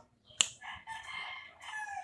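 A single sharp click, then a faint rooster crowing for about a second and a half.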